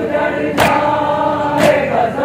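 A group of men chanting a noha in unison, with a sharp chest-beating (matam) strike about once a second, twice here.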